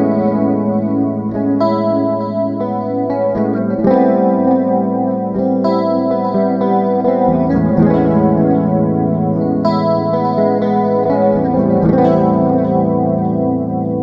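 Epiphone Joe Pass Emperor II hollow-body electric guitar playing sustained chords through a BOSS GT-8 effects processor, the chord changing every second or two.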